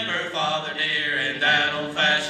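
Three men singing a gospel song together, male voices held on sustained sung notes.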